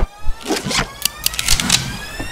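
A whine that climbs slowly and steadily in pitch, with several sharp clicks and clacks in the first half.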